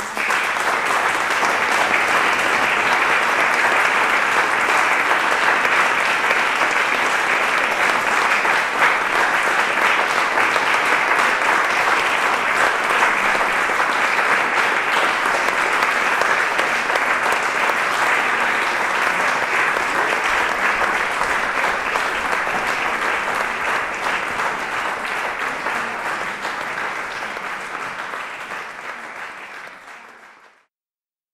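Audience applauding, starting suddenly and holding steady for about twenty seconds, then slowly thinning before it falls away near the end.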